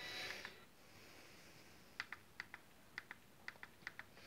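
A short soft noise at the start, then about ten faint, light clicks at an uneven pace over the last two seconds.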